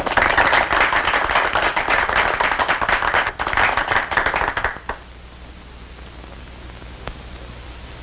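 Applause, a dense patter of clapping that stops abruptly about five seconds in, leaving a steady soundtrack hiss.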